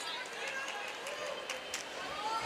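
Basketball arena ambience: a low murmur of crowd and player voices with players' footsteps on the hardwood court, and a few short sharp sounds about one and a half seconds in.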